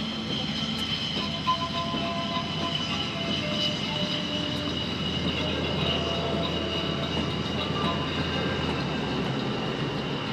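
Twin Klimov RD-33 turbofans of a MiG-29AS running at low power as the fighter rolls along the runway: a steady high turbine whine over a broad rumble.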